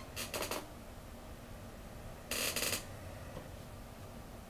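Faint brief rustles and scrapes of a paper ballot being handled on a desk, in two short clusters: one at the very start and one about two and a half seconds in.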